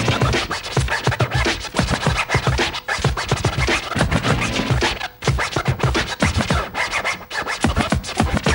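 Turntablists scratching vinyl records on Technics turntables over a hip-hop beat: rapid back-and-forth scratches and cuts, with a brief break about five seconds in.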